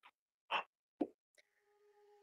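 Two brief soft clicks in a pause, about half a second apart, followed by a faint steady pitched tone.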